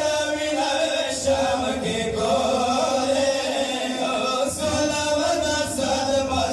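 Men's voices chanting a Pashto noha, a Shia lament, led by two reciters at a microphone, in long held lines without a break.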